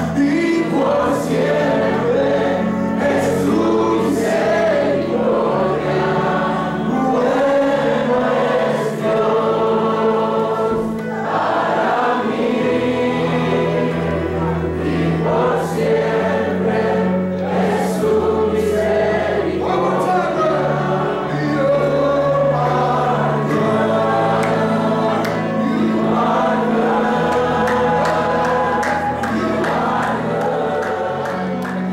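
Youth choir singing a gospel worship song over live band accompaniment of keyboard and guitar, with held low bass notes that change every second or two.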